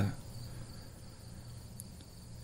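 Quiet pause between words: a low steady hum with a faint, steady high-pitched whine over it, as the tail of a spoken word fades at the very start.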